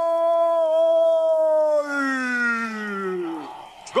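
A football TV commentator's long, drawn-out shout on a goal. He holds one high note for about two seconds, then his voice slides down in pitch and dies away.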